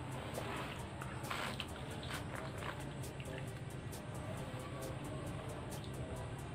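A few short sips of warm tea drawn from a glass mug, heard in the first three seconds, over a steady low hum.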